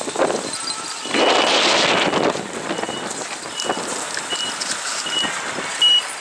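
Road traffic noise at a busy intersection, with a vehicle passing loudly about a second in. From halfway on, a short high electronic beep repeats steadily about every three-quarters of a second.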